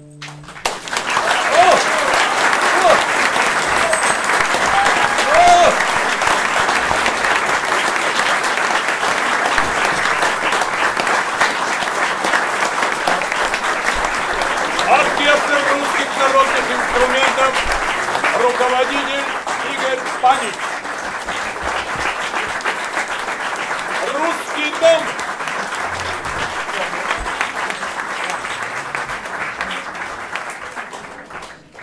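Audience applauding, with scattered voices calling out among the clapping; the applause thins and tapers off near the end.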